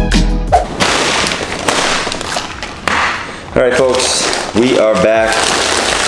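A paper fast-food bag rustling and crinkling as it is handled and opened, followed near the end by a couple of short voice sounds.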